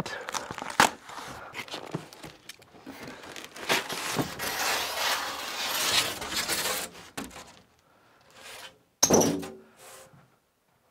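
Large cardboard shipping box being opened by hand: sharp knocks and tape tearing, then several seconds of cardboard tearing and scraping as a panel comes away. A short vocal sound follows about nine seconds in.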